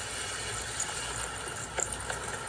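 Steady outdoor background noise from a street, faint and without a clear source, with a couple of light ticks near the end.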